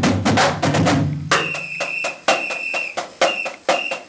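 Marching drumline of Yamaha snare drums playing a cadence: a dense run of rapid strokes and rolls, then from about a second in, spaced sharp accented hits, some with a bright ring, in a repeating rhythm.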